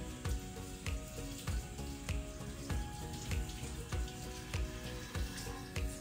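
Background music with a steady beat, a little under two beats a second, over a faint steady hiss.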